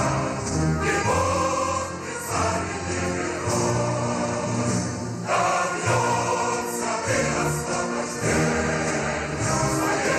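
Music: a choir singing sustained chords over accompaniment.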